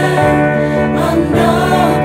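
Music: a choir of voices singing held chords, the notes changing every second or so.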